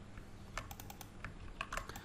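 Faint typing on a computer keyboard: a quick, uneven run of keystrokes as a short word is typed in.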